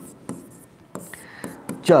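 Stylus writing on the glass of an interactive touchscreen board: a few light taps and scratches in a quiet room.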